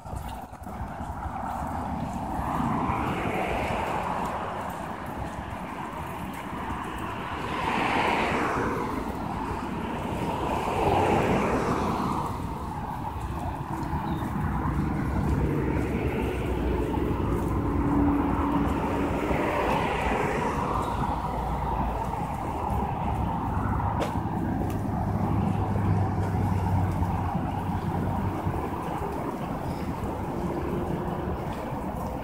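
Road traffic on an adjacent multi-lane road: cars passing one after another, each swelling and fading over a few seconds, with a low engine hum in the second half.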